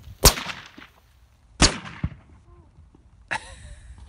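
.375 H&H Magnum rifle firing a 300-grain bullet once: a loud, sharp crack with a short ringing tail. About a second and a half later comes a second, slightly quieter sharp report.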